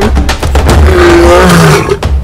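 A lion roaring once, slightly falling in pitch, over music with a heavy bass beat.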